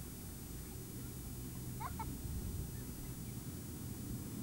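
Outdoor ambience with a steady low rumble, and a couple of short rising bird chirps about two seconds in.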